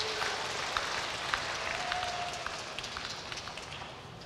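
Congregation applauding, a dense patter of many hands clapping that gradually fades away.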